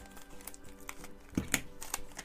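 Scissors cutting through a sealed plastic toy packet, with the plastic crinkling and a few sharp snips in the second half.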